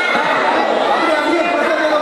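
A group of men talking and calling out over one another, a loud continuous chatter of overlapping voices in a large hall.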